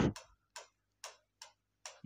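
Pen tip ticking against an interactive whiteboard screen as handwriting is drawn: about five short, sharp clicks spread over two seconds.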